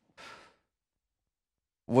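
A man's short breathy sigh, about half a second long, soon after the start, followed by silence.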